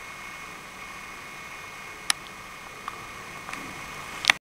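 Steady background hiss with a faint high whine, broken by a few small clicks near the end.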